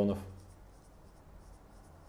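Marker pen writing on a whiteboard, faint strokes just after a voice trails off.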